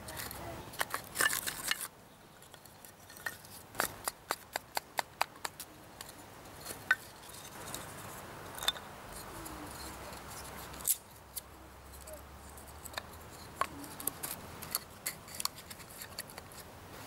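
Dry wooden kindling sticks clicking and knocking against each other and against a split spruce log as they are dropped and slotted into the gaps between its quarters: a series of short, sharp wooden clicks, thickest about one to two seconds in.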